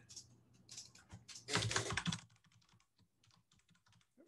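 Typing on a computer keyboard: scattered keystrokes, a quicker run of keys at about one and a half to two seconds in, then a few fainter taps.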